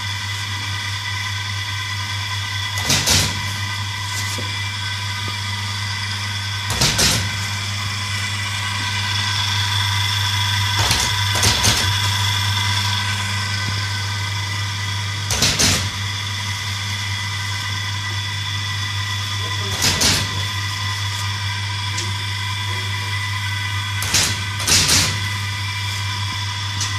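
Automatic punch machine running with a steady electric hum, its punch clunking about every four seconds, some strokes landing as a quick double knock.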